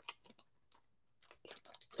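Faint crinkling and crackling of a foil Mosaic football card pack wrapper being torn open and handled, in short crackles with a brief pause about half a second in.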